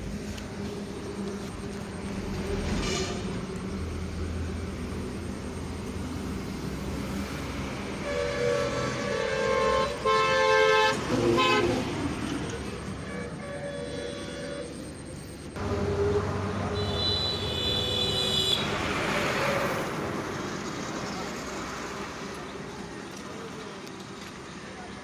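Vehicle horns tooting several times, in short bursts around the middle, over a steady hum of road traffic.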